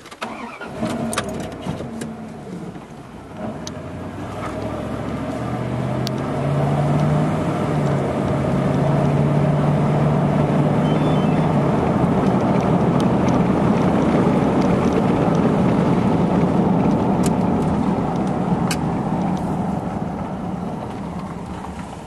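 Truck pulling away and accelerating, heard from inside the cab: engine and road noise build over the first several seconds, hold steady while cruising, then ease off near the end as it slows.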